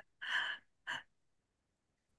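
A person's breathy laugh trailing off: one breathy exhale about a quarter second in and a shorter one about a second in.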